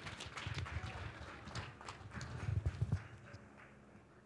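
Irregular knocks and clatter from a congregation stirring and moving, cut off about three seconds in.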